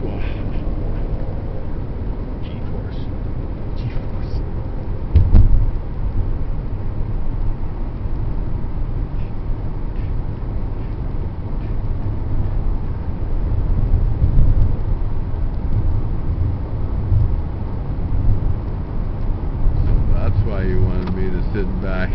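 Steady road and engine rumble inside the cabin of a 2002 Chevrolet Impala cruising on a paved road, with one brief thump about five seconds in.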